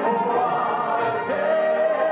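Male gospel quartet singing live into microphones, the voices holding a long note from a little past halfway.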